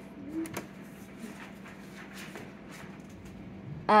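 Quiet room tone with a steady low hum and a few faint, soft clicks.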